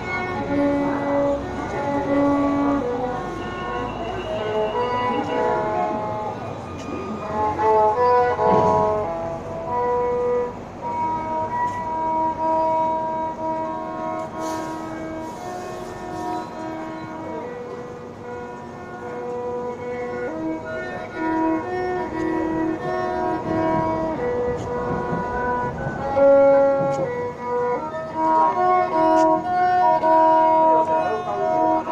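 Violin playing a slow melody, mostly long held notes.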